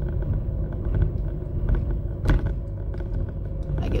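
Steady low rumble of a car heard from inside the cabin, with one short knock a little over two seconds in.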